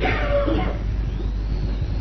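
A pause in a man's sermon, filled by the recording's steady low hum, with a faint voice briefly near the start.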